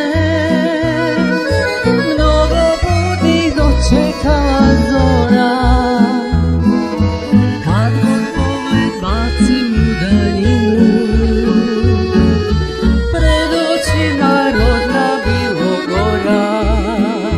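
Croatian folk song played live: a woman singing with vibrato over an ensemble of tamburicas, accordion, violin and double bass, the accordion prominent.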